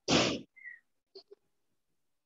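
A short, breathy burst of noise from a person, about half a second long, then two faint clicks.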